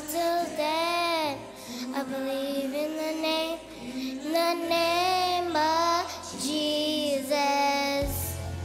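A small group of young girls singing a song together, in long held phrases with short breaks between them.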